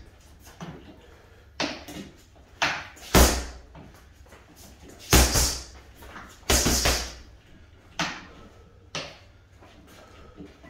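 Boxing gloves striking a soft foam-filled Adidas Body Snatcher wrecking ball bag, about eleven punches in singles and quick one-two pairs. Each hit lands as a sharp thud with a short decay, and the heaviest land about three and five seconds in.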